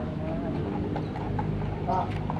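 Voices talking in the background over a steady low hum, with a sharp click near the end.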